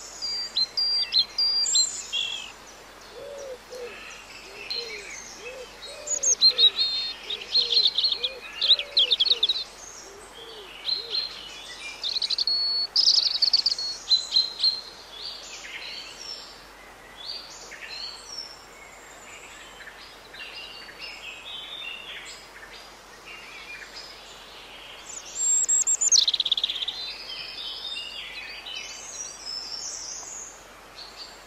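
Several wild birds singing in woodland: bursts of high chirps and trills, loudest in a few spells. A lower call repeats about twice a second for several seconds early in the passage.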